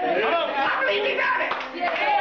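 A church congregation's overlapping voices calling out, mixed with hand clapping.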